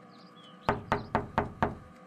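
Knocking on a door: five quick, sharp knocks about four a second, starting about a second in.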